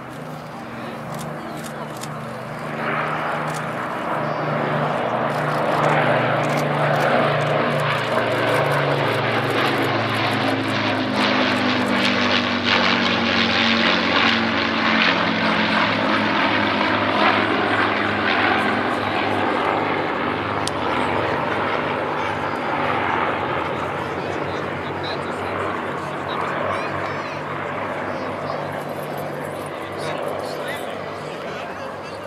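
Propeller drone of a close formation of piston-engined warbirds: an Avro Lancaster's four Rolls-Royce Merlin engines with a Hawker Hurricane and a Supermarine Spitfire. The drone swells over the first few seconds as they approach, drops in pitch as they pass, and fades away toward the end.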